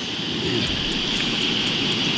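Steady outdoor background noise through a body-worn camera microphone: a continuous rushing hiss with a constant high-pitched band, growing a little louder in the first half-second.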